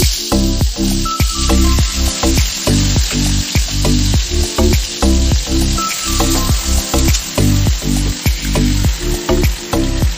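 Hot oil sizzling in a kadai as marinated meat pieces fry, with background music with a steady beat playing over it.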